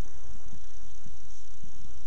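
Faint rustling and light ticks of deco mesh and a wreath board being handled, over a steady high-pitched hiss and low hum.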